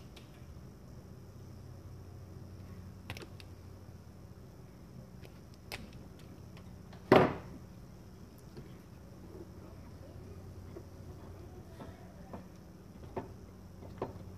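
Hands handling and twisting wires together by hand: a few light clicks and taps, with one louder knock about seven seconds in, over a steady low hum.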